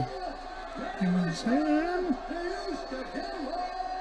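Faint speech in the background, the fight broadcast's audio playing quietly while the host is silent.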